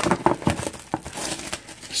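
Clear plastic shrink wrap being torn and crinkled off a trading-card box, irregular crackling with a few sharper rips.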